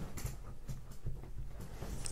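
A chair creaking under a seated person shifting and scratching himself, in irregular low rubs and soft knocks.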